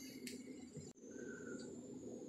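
Quiet background noise with a single sharp click about a second in, after which a faint steady high-pitched whine runs on.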